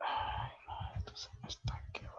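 A person whispering, with several sharp clicks in the second half.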